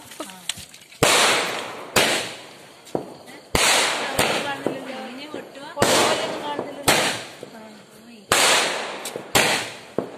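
Fireworks going off: about eight sharp, loud bangs spaced a second or so apart, each ringing out briefly before the next.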